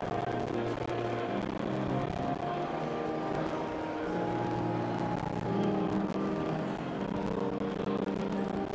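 Church organ playing held chords that change every second or so, with a sustained low bass line.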